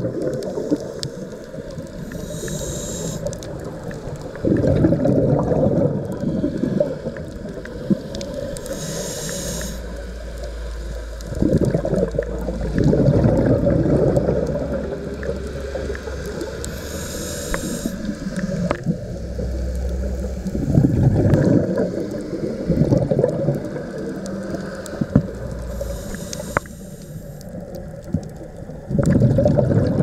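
A scuba diver breathing through a regulator, heard underwater: a short hiss of inhalation four times, about every eight or nine seconds, each followed by several seconds of gurgling exhaust bubbles, which are the loudest sound.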